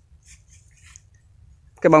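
A quiet outdoor pause with only faint, light rustles and ticks. A man's voice comes in near the end.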